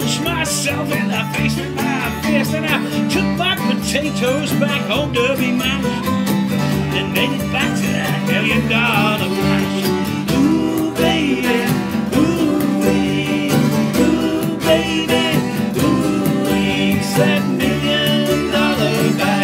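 Live acoustic folk music: acoustic guitar played with a man singing, and a wavering higher melody line prominent in the second half.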